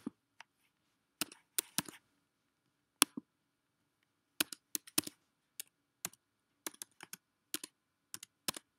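Typing on a computer keyboard: a few separate clicks in the first half, then a quicker run of key taps from about halfway through.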